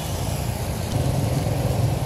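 Suzuki Smash motorcycle's single-cylinder four-stroke engine idling steadily, a low, evenly pulsing rumble that grows slightly louder about a second in.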